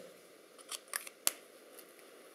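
Small sharp clicks from handling a Parker Vector fountain pen and its cap: three close together around the middle, with a fainter one near the end.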